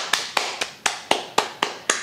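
Hands slapping in a quick, even rhythm, about four sharp strikes a second.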